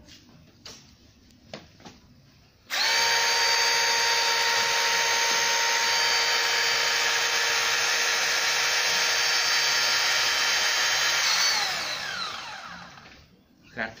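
Lukas SP 333 E2 battery-powered hydraulic rescue spreader: its electric motor and hydraulic pump start suddenly about three seconds in and run with a steady whine while the spreader arms open. Near the end the motor winds down, its pitch falling.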